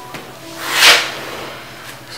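A single breathy whoosh of noise that swells to a peak just under a second in and then fades away.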